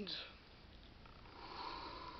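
A man's breathing between words: a short sniff at the start, then a soft breath blown out through pursed lips from about a second and a half in.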